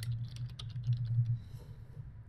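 Typing on a computer keyboard: a quick run of key clicks that stops about one and a half seconds in, over a low hum that fades out at the same time.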